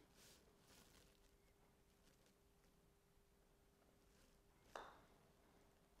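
Near silence in a small room with a faint steady hum, broken once about three-quarters of the way through by a single short, faint click: a putter striking a golf ball on an indoor putting mat.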